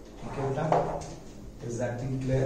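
Chalk strokes on a blackboard as an equation is boxed in, mixed with a man's voice speaking briefly.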